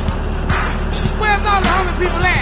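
Background music with a steady beat, about two a second, and gliding pitched notes that come in about halfway through.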